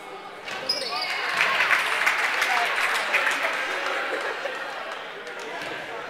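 Gymnasium crowd cheering and clapping during a free throw in a basketball game, swelling about half a second in and fading toward the end, with a basketball bouncing on the hardwood court.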